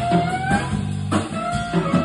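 A live jazz band plays an instrumental passage: an electric guitar carries a melodic line of held, slightly sliding single notes over electric bass and drums.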